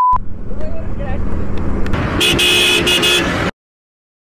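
A vehicle horn honks in a few short, quick blasts for just over a second, about two seconds in, over motorcycle engine and road noise while riding. A steady beep tone ends just as the sound opens, and everything cuts off abruptly shortly before the end.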